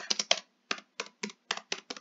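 Typing on a computer keyboard: about ten separate keystrokes at an uneven pace.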